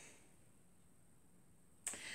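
Near silence: room tone, broken by a single short sharp click near the end.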